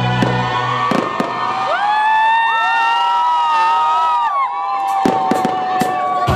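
Fireworks salute: sharp bangs about a second in and a cluster of them near the end, with several long whistling tones sounding together in between. Music and crowd noise run underneath.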